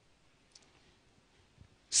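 Near silence in a pause of speech, broken by a short faint click about half a second in and another near the end, just before a man's voice begins.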